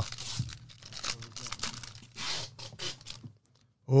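The foil wrapper of a trading-card pack is torn open and crinkled, in a few irregular bursts of rustling that stop shortly before the end.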